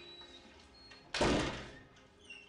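A wooden door thudding shut once, a little over a second in, the sound dying away over about half a second.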